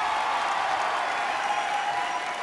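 Audience applauding, a steady dense clapping from a large crowd.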